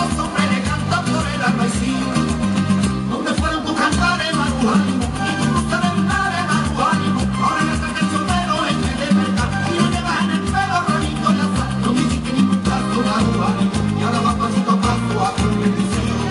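Latin dance music with a steady beat and a repeating bass line, played loud through stage loudspeakers as backing for a flamenco-style dance routine.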